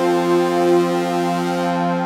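Background music: sustained synthesizer chords held steadily, with no notes changing.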